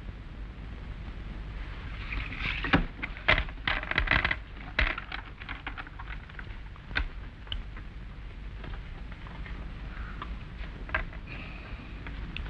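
Playing cards being shuffled and handled on a table: a quick run of sharp clicks and riffling rustles about two to five seconds in, then scattered lighter clicks and taps, over a low steady hum.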